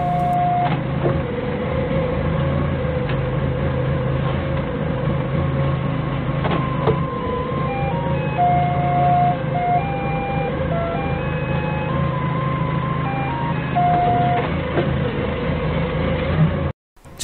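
Doosan 4.5-ton forklift's engine running steadily as it backs up, with a few sharp knocks in the first half. Through the second half, its reversing alarm plays a simple electronic tune of short notes at changing pitches.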